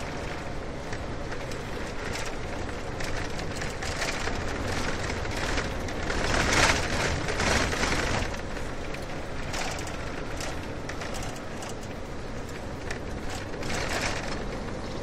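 Car driving on a road: steady tyre and road noise over a low rumble, swelling to a louder rush about six to eight seconds in.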